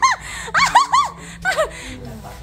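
High-pitched laughter in short, quick 'ha' bursts: one at the start, three in rapid succession about half a second in, then two falling ones that trail off.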